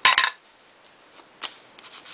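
An ink blending tool rubbed briefly and hard across a Distress Ink pad, a short scratchy scrape at the start, followed by a couple of faint taps.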